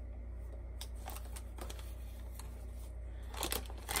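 Clear plastic bag crinkling and rustling softly as a hank of wool top is handled over it and pushed into it, with a louder rustle near the end, over a steady low hum.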